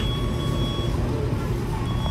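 An electronic beeper sounds in long, steady beeps about a second each: one runs through the first half and the next starts near the end, over a steady low rumble.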